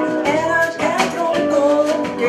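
Live jazz-blues band playing: a woman singing over electric guitar, bass guitar, keyboard and drums.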